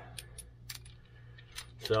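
A few light metallic clinks and ticks, scattered through the moment, as the steel parts of a homemade bearing puller are handled.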